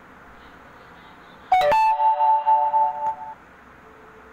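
Low hiss, then about a second and a half in a short electronic chime: a quick upward sweep into a few held tones that stop after about two seconds.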